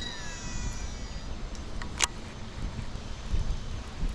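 Shimano Metanium DC baitcasting reel whining as the spool spins out on a cast: a thin whine that slides down in pitch and fades after about a second. Wind rumbles on the microphone throughout, with one sharp click about two seconds in.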